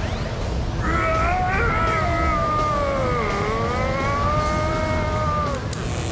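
Cartoon soundtrack: music with a long wavering, wail-like tone that dips in pitch in the middle, over a low rumble as the characters are carried off in a whirlwind.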